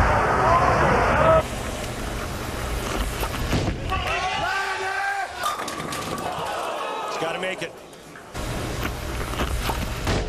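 Bowling-alley arena ambience from a television broadcast: crowd murmur and indistinct voices, with abrupt changes where the footage cuts between clips.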